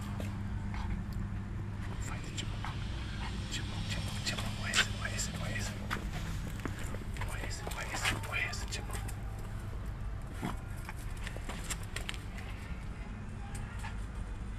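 A Yorkshire terrier nosing and pawing through dry leaves and debris at the foot of a wall, making scattered rustles, scuffs and light clicks, the sharpest about five seconds in. A steady low hum runs underneath.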